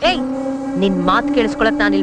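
Voices speaking over a steady, even drone at one pitch that begins abruptly at the start.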